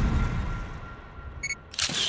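Logo-intro sound effects: a low boom fades away over the first second, then a short high electronic beep about a second and a half in, followed by a brief sharp click-like burst near the end.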